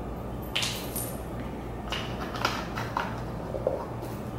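A few soft knocks and rustles of a plastic measuring spoon and a plastic bottle of aloe concentrate being handled, with the spoon set down on the counter, over a steady low hum.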